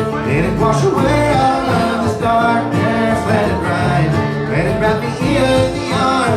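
Live acoustic bluegrass-style string band playing: resonator guitar played lap style, acoustic guitar, upright bass and banjo together in a steady country tune.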